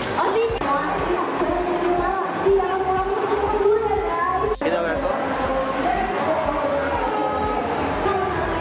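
A song with a singer's voice over backing music, the notes held and running on without pauses, with a brief dropout a little past halfway.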